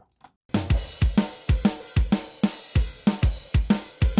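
Multitrack drum-kit recording playing back, with kick, snare and cymbals in a steady beat that starts about half a second in. The tracks are balanced by gain alone, with no EQ, compression or effects.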